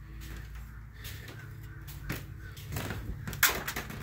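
Handling noise as a metal hood ornament is picked up and moved: a few sharp knocks and clicks, the loudest in the last second, over a low steady hum.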